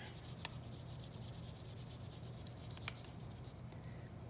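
An oil pastel rubbed back and forth on paper, colouring in an area with a quick, even, faint scratching.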